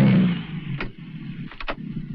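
A car pulling up and stopping, its engine and tyre noise dying away within the first half second. A few sharp clicks follow as the car doors are unlatched.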